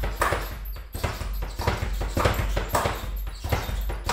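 Speed bag drumming against its wooden rebound platform as it is punched in a steady rhythm, with a stronger hit about twice a second and quick rebound knocks between them. It is worked with single punches, one per hand in turn.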